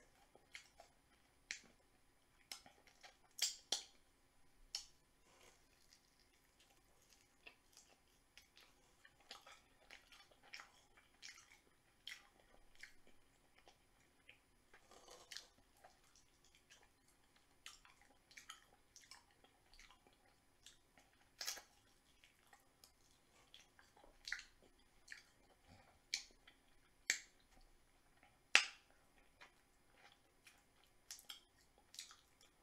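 A person eating fried chicken wings and onion rings close to the microphone: faint, irregular wet mouth clicks and smacks with chewing, a few louder smacks standing out now and then.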